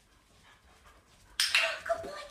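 A dog barks suddenly and loudly near the end, after a near-quiet start.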